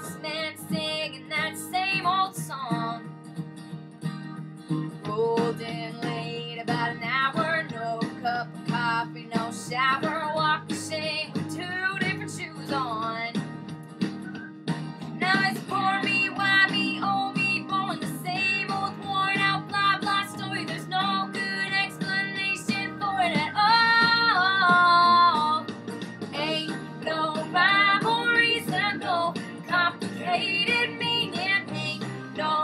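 A woman singing a country-pop song in a solo cover, with strummed acoustic guitar accompaniment under her voice. Her voice holds several long notes, the loudest about two-thirds of the way through.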